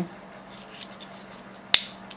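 Faint rustle of a piece of paper being rolled into a cone by hand, with a single sharp click about three-quarters of the way through.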